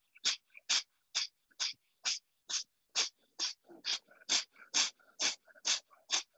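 Rapid, forceful breaths through the nose, about two a second. Each is short and sharp, with a quiet gap between, like the pumped exhalations of a yoga breathing exercise such as kapalabhati.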